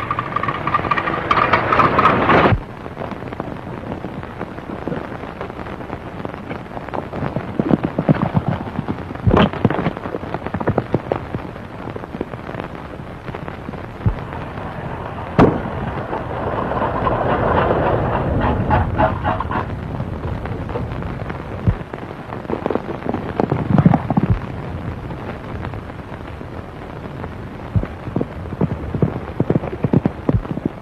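Action sound from a crackly early-1930s film soundtrack: an early open motor car running fast over rough ground, with several sharp cracks like gunshots. A louder stretch with a held tone opens the passage, and another comes near the middle.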